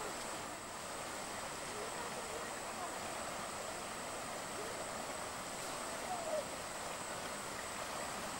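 River water rushing steadily through the gaps of a wooden fish weir.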